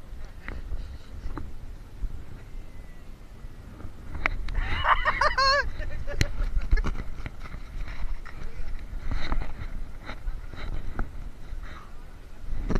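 Wind rumbling on the microphone, with scattered sharp clicks and knocks throughout and a brief wavering shout or call about five seconds in.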